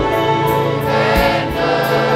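Live gospel worship music: singing voices over a violin ensemble, with a steady drum and cymbal beat.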